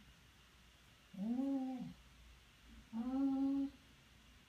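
Basset hound whining in two drawn-out moans: the first rises and then falls in pitch, the second is held at a steady pitch.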